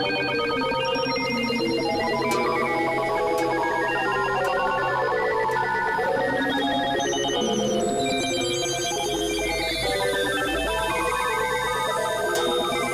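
Dense layered electronic music: many fast-pulsing tones sound together at different pitches, stepping up and down, over a steady low drone. A deep bass comes in about three-quarters of the way through.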